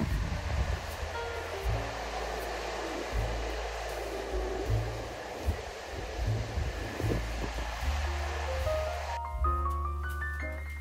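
Rushing water of a monsoon-swollen waterfall pouring over rock tiers, under background music with low sustained notes. The water sound cuts off suddenly about nine seconds in, leaving only the music, which climbs in a rising run of notes near the end.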